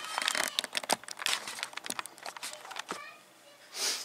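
A camera and tripod being handled and raised, giving a rapid run of small clicks and knocks with rustling, which dies away about three seconds in.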